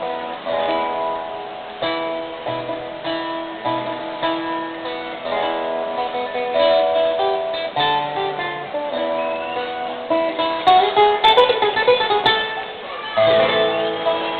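Music played on plucked string instruments such as guitars: a continuous melody of sustained notes, louder with sharp accents a little past two-thirds of the way through.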